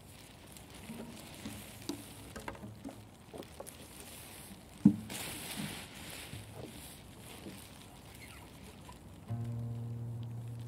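A quiet pause with scattered light taps and rustles and one sharper knock about five seconds in, then an acoustic guitar starts playing near the end.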